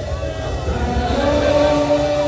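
Crowd of mourners singing and wailing together in long held notes over a heavy low rumble.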